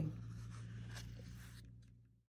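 Faint rustling and light ticks of paper card stock being handled, over a steady low electrical hum; the sound fades out near the end.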